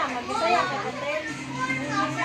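Children's voices talking and playing, unbroken chatter with no pause.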